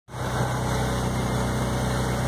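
Truck engine running steadily, heard from inside the cab while driving, under a steady hiss of road noise on a wet road.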